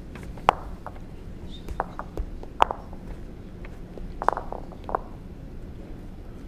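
A handful of sharp clicks and knocks at irregular intervals, each with a short ring, over the steady low hum of an indoor bowls hall.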